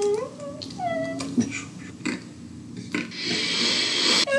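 A man's high-pitched, squeaky vocal whines in the first second or so, each gliding up and down, then a breathy hissing exhale near the end, like held-in laughter.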